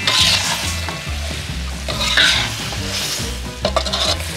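Sliced bananas and chopped green onions sizzling in sugar in a wok, stirred with a metal ladle, with a few ladle scrapes against the wok near the end. The sugar is cooking down with the onions and is close to scorching.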